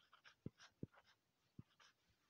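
Near silence with a few faint taps and light scratches of a stylus writing on a tablet screen.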